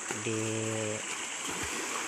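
Children splashing and wading in a shallow stream: a steady wash of splashing water.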